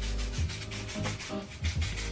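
Rapid rubbing strokes against hair, as product is worked into it, over soft background music.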